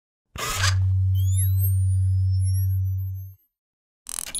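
Synthesized logo-intro sound effect. A noisy whoosh hits about a third of a second in, then a steady low drone with rising high whistling sweeps and a few falling glides over it. It all cuts off abruptly a little over three seconds in.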